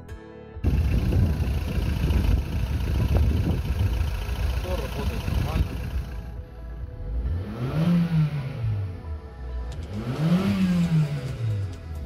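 Skoda Roomster's 1.6-litre 16-valve BTS petrol four-cylinder running, heard from inside the car. It starts about half a second in, and in the second half it is revved twice, each rev rising and falling back in pitch.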